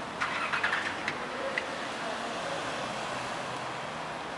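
A car driving slowly past through a car park over steady traffic noise, with a brief louder burst of higher-pitched noise and a few sharp clicks in the first second.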